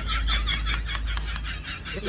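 A bird calling: a fast, even run of short high chirps, about eight a second, growing fainter.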